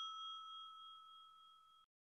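The fading ring of a single bright chime, the ding of a closing logo jingle, held on two steady tones and dying away. It cuts off abruptly near the end.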